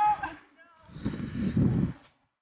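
A girl's high-pitched voice calls out without clear words near the start, followed by loud low rumbling noise about a second in.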